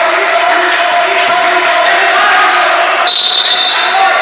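A basketball being dribbled on a gym floor, about two bounces a second, with sneaker squeaks and voices echoing around the hall. A shrill steady tone sounds for about a second near the end.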